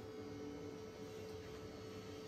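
Faint, steady electrical hum with a constant pitched tone: quiet room tone in a pause between sentences.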